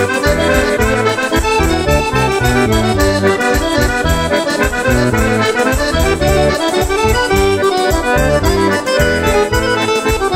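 Accordion playing a busy traditional Portuguese dance tune with a steady, regular bass beat.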